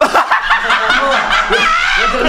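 Several men laughing loudly together, their laughs overlapping. The laughter starts suddenly.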